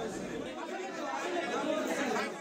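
Crowd chatter: many people talking at once in a packed indoor corridor, getting a little louder toward the end.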